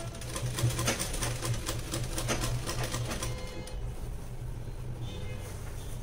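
Sewing machine stitching a zip into a blouse: a fast, even run of needle strokes for about three and a half seconds, then it slows and goes quieter.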